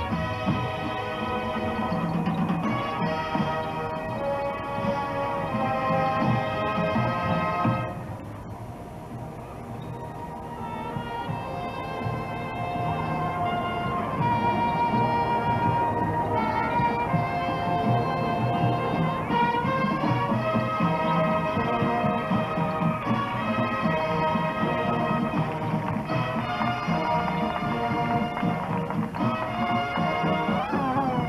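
High school marching band playing, the brass holding sustained chords over low drums and sousaphones. The band drops softer about eight seconds in and builds back up to full volume by the middle.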